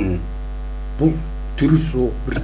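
Steady electrical mains hum on the audio line: a low buzz with a ladder of even overtones, broken by short fragments of a man's voice about a second in and near the end.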